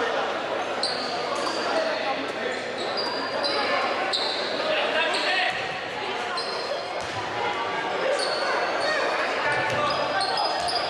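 Live court sound of an indoor basketball game: sneakers squeaking in many short high chirps and the ball bouncing, over shouts and voices echoing in the gym.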